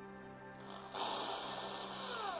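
Bosch PSB 650 RE corded drill switched on and spun freely with no load, starting about a second in.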